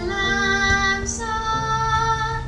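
Children singing long held notes, moving to a new note a little past halfway through.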